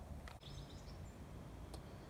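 Quiet outdoor background with a few faint, high bird chirps about half a second in.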